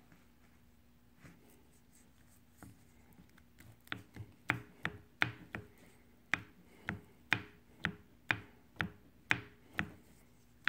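Second gear on a Muncie M21 transmission main shaft being rocked back and forth by hand, giving sharp metal-on-metal clicks about twice a second from about four seconds in, each with a brief ring. The clicking is the gear's play on the shaft, on the gear that keeps popping out of second.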